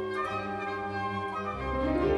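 Orchestral classical music with held, sustained notes; near the end it moves into a fuller, louder passage.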